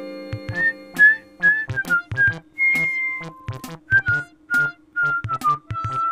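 A tune whistled over an electronic children's-music beat: a row of short, slightly sliding whistled notes, one held longer near the middle, with a kick drum and clicking percussion underneath. A synth chord fades out at the start.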